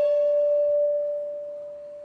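A single long, high instrumental note held and dying away: its overtones fade first, leaving a plain, pure tone that grows steadily quieter.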